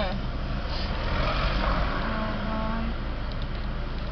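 Street traffic: a vehicle drives past close by, its engine and tyre noise swelling and fading over a steady low rumble of traffic.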